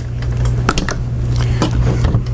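A few light metal clicks and taps as a Swedish pistol-grip trigger housing is seated in a BAR's receiver and its retaining pin pushed home, over a steady low hum.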